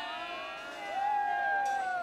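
A group of voices whooping and cheering together, several long drawn-out calls at different pitches overlapping, the last one held and sliding down at the end.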